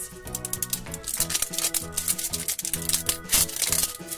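Plastic wrapper being peeled and torn off a Pikmi Pops toy by hand: a dense run of quick crinkling crackles, over steady background music.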